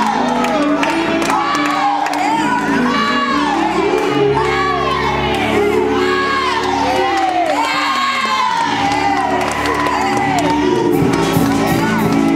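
Gospel church congregation shouting and whooping in praise, many voices with rising and falling cries, over music holding sustained chords.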